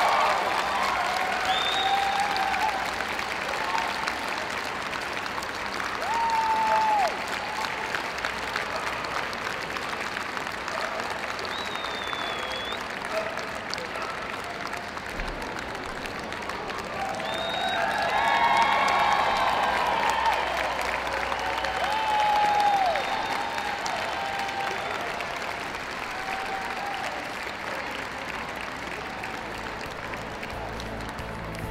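Crowd in a large hall applauding steadily, loudest at the start and easing off, with a few swells. Voices and short shouts rise above the clapping now and then. The applause greets the judge's choice of Best of Breed.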